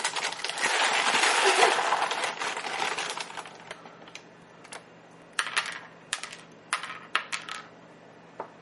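Dry toasted corn cereal squares clattering: a dense rattle for the first three seconds, then a scatter of separate sharp clicks as pieces drop onto a plastic high-chair tray.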